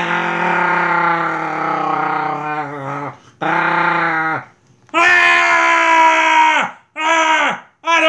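The alien baby's voice: four long, wavering, voice-like groans and wails with no words. The first lasts about three seconds and the loudest comes about five seconds in.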